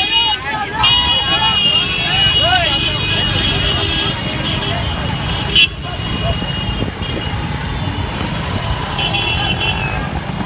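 Vehicle horns blaring in long steady blasts over a low rumble of street traffic, with excited crowd voices early on. One short, sharp, loud burst about halfway through.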